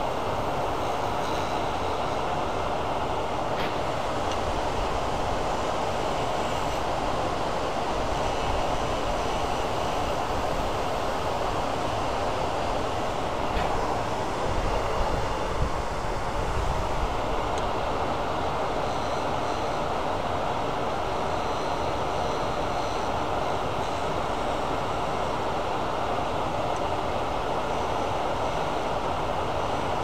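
Steady running noise of a lathe and its dust-collection hood, as a small carbide tool makes light cuts on the ends of a spinning aluminum honeycomb and resin pen blank.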